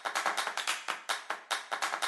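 Electronic background music in a stretch of fast, even drum hits, about eight a second, with little melody.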